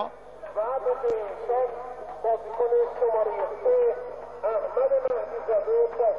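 Football crowd chanting in the stadium stands, a continuous sung, voice-like chant.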